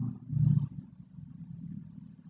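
A short, low breathy vocal sound from the narrator close to the microphone about half a second in, followed by a faint low background rumble.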